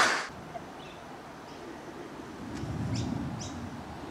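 A louder sound cuts off just after the start, leaving quiet outdoor ambience. Over a low rumble, a few short, faint bird chirps come in the second half.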